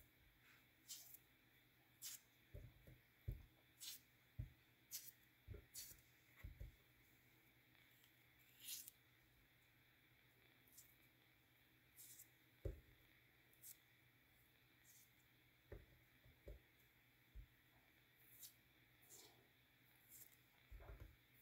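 Faint, scattered small clicks and soft squelches of fingers pulling peeled mandarin oranges apart into segments and picking off the pith, a couple of sounds every second or so.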